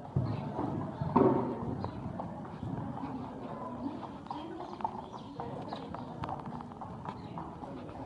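Hoofbeats of a horse cantering on the soft footing of an indoor arena during a show jumping round, an uneven run of dull thuds that is loudest in the first second or so.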